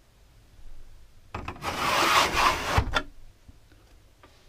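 A pleated blind being drawn down over a motorhome door window, a rubbing, sliding sound of the blind running in its frame for about a second and a half, ending with a light knock as it stops.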